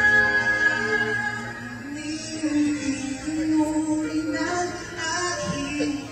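Male vocal group singing live with instrumental accompaniment, holding long sustained notes.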